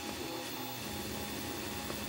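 Large home-built 3D printer running a PETG print: a steady mechanical hum from its stepper motors and cooling fan as the print head moves.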